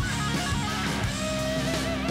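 Background guitar music with held notes; no sound from the knot-tying itself stands out.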